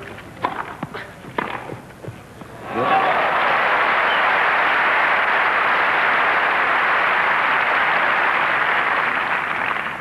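A few sharp tennis-ball strikes off rackets in a short rally, then a crowd applauding loudly and steadily for the rest of the time after the point ends.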